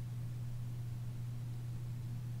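Steady low hum with a faint hiss underneath, unchanging throughout.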